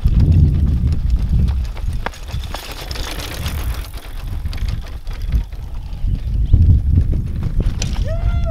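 Wind rumble on the microphone, with uneven crunching and knocks of movement over a dirt road, as a riderless mountain bike rolls along on its own after a push.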